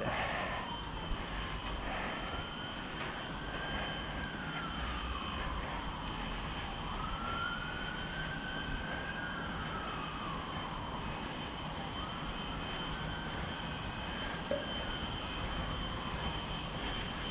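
An emergency-vehicle siren wailing slowly up and down, one rise and fall about every five to six seconds, over a steady low rumble and a thin steady high tone.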